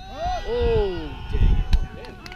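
Players' voices shouting across the field, with one long call that falls in pitch about half a second in and other calls overlapping it.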